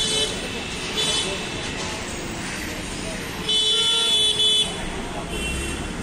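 Vehicle horns honking over street noise and voices. There are short honks at the start and about a second in, a loud honk lasting about a second from three and a half seconds in, and a fainter one near the end.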